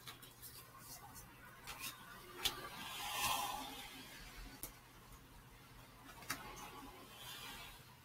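Faint rustling of a tarot deck being shuffled by hand, with a few light clicks of the cards and a slightly louder swell of rustle about three seconds in.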